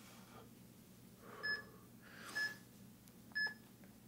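Workout interval timer's countdown: three short electronic beeps about a second apart, marking the last seconds of the exercise interval. Soft breaths are heard just before the first two beeps.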